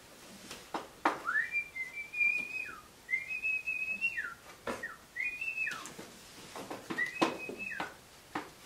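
A five-week-old Aussiedoodle puppy whining: four high, drawn-out whines, each rising at the start and falling away at the end, the first two the longest. Light taps and scuffles from the puppies moving about come in between.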